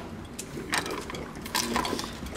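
Pump-action airpot coffee dispenser being pressed down by hand, its plunger mechanism working with short noisy bursts under a second in and again near the end. The pot is empty, so no coffee comes out.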